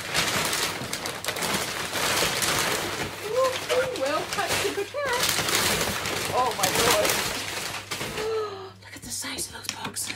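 Crumpled brown kraft packing paper crackling and rustling loudly as it is pulled out of a cardboard box. The crackle dies down after about eight seconds.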